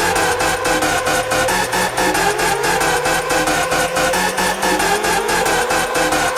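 Drum and bass music over a club sound system in a build-up: a fast, even roll of drum hits with no heavy bass under it, and rising synth sweeps that repeat every couple of seconds.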